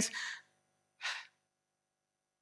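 A man's voice trailing off into breath, then one short intake of breath about a second in.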